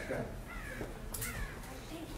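A crow cawing twice, two short falling calls, over a low steady outdoor background.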